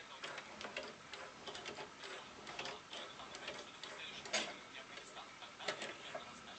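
Bang & Olufsen Beosound 9000 CD changer's disc carriage travelling along the row of discs, with rapid mechanical ticking and clicks, a louder click about four seconds in and another near the end.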